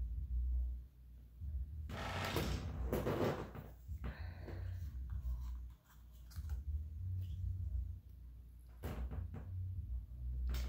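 Makeup packaging being handled and moved about close to the microphone: a rustling, clattering stretch about two seconds in, then scattered knocks and a few sharp clicks near the end, over a low rumble.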